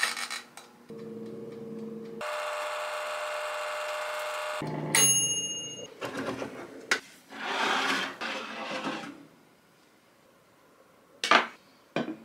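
Jaewon oven-type air fryer running with a steady hum; about five seconds in, its timer bell dings and the hum stops at once. Then the door is opened and the metal baking tray scrapes out over the rack, with one sharp clack near the end.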